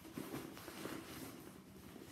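Faint rustling and small scuffs and taps of a fabric handbag and pouch being handled as the pouch is pushed into the bag's outside pocket.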